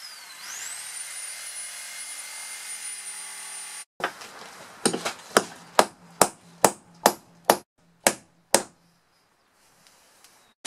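A power tool spins up to a high, steady whine for about four seconds, then cuts off abruptly. It is followed by about a dozen sharp hammer blows, roughly two a second, on a punch driving fastenings out of a boat's wooden frame.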